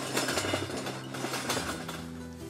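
A loaded wheeled ambulance stretcher being pushed into the back of an ambulance, its metal frame and wheels rattling and clattering, easing off near the end.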